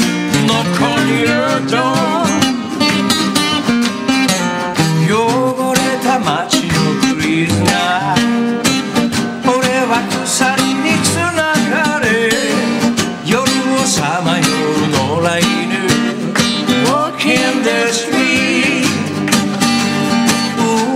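A man singing while playing an acoustic guitar, a live performance of a song at a studio microphone.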